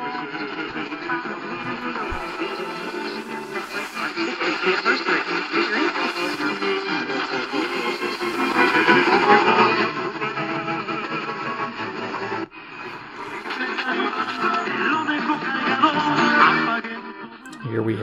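AM radio broadcast of music with a voice, played through the C.Crane CC Radio EP Pro's speaker, with a brief break about twelve seconds in.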